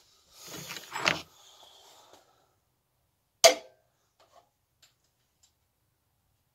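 Hands and tools working in a car's engine bay while a part is tightened. There is about two seconds of rustling and scraping, then a single sharp knock about three and a half seconds in, followed by a few faint ticks.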